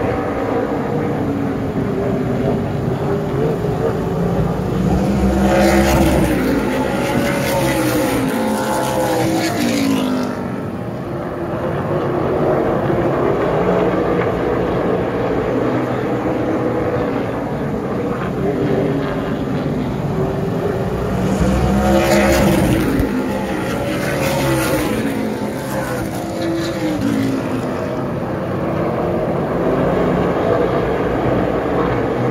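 Pack of super late model stock cars lapping an oval, their V8 engines running continuously at race speed. The engine note swells twice as the pack passes, about sixteen seconds apart, its pitch falling as the cars go by each time.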